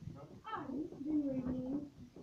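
A person's voice making one drawn-out sound, held at a steady pitch for about a second.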